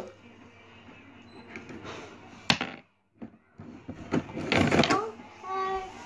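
Plastic toy railway pieces being handled: one sharp click about two and a half seconds in, then rustling and knocking of plastic parts near the end.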